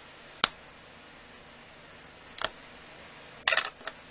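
Sharp clicks and taps of small hand tools being handled on the work table: a single click about half a second in, another about halfway through, and a quick cluster of clicks near the end.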